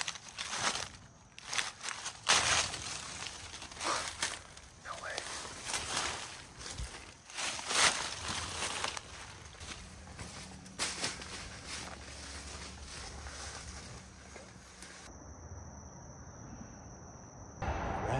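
Footsteps and rustling on a dry leaf-litter path through bamboo and chain-link fencing, with frequent sharp scrapes and brushes in the first half. After about ten seconds it settles into quieter, steadier walking over a low hum.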